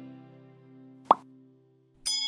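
Held notes of background music fade out, and just past a second in a single short, sharp pop sounds: a button-click sound effect.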